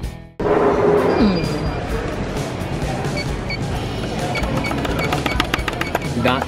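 Music cuts off abruptly right at the start, giving way to the busy hubbub of a crowded airport terminal, with a few short high beeps. Near the end comes a quick run of plastic clicks, fingers tapping the buttons of a smiley-face customer-feedback kiosk.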